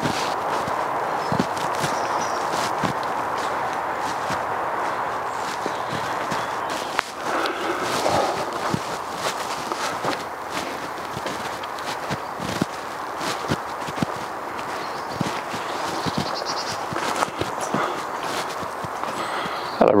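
Footsteps of a person walking in wellington boots along a wet woodland path: irregular soft steps over a steady rushing background noise.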